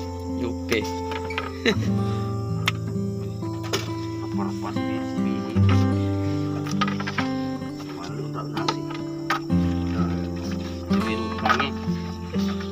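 Background music: sustained chords that change about every two seconds, with scattered short clicks and taps over them.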